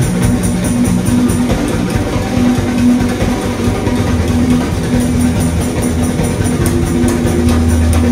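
Live rock band playing an instrumental passage with no vocals: electric guitars over a drum kit keeping a steady cymbal beat, with held low notes that change pitch every second or so.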